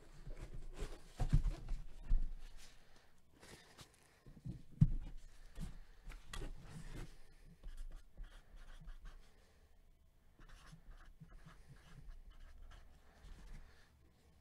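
Tabletop handling noises: scratching and rubbing, with a few soft knocks, the loudest about five seconds in.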